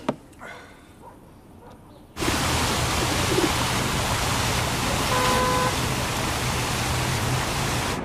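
A quiet room with a couple of soft clicks, then an abrupt cut about two seconds in to loud, steady town street ambience: traffic noise with a low hum. A short beep sounds a little past the middle.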